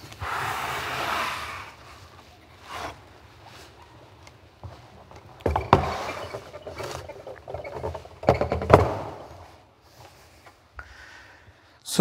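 The keyboard and hammer action of a concert grand piano being handled out of the case and onto a table: a long wooden sliding rub at the start, then a few sharp wooden knocks, the loudest near the middle as it is set down, with scraping in between.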